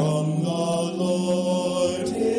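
Mixed-voice church choir singing a hymn in slow, sustained notes, the voices holding each chord before moving to the next.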